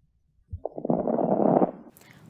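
Recorded lung sounds of a single breath about half a second in, lasting about a second: rough, gurgling rhonchi with crackles (rales), the sign of secretions in the airways in pneumonia.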